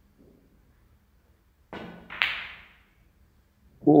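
A snooker shot: the cue tip strikes the cue ball, and about half a second later the cue ball hits the red with a sharp click that rings briefly.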